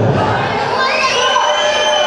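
Small crowd cheering and shouting, with children's high voices among them; one high yell is held through the second half.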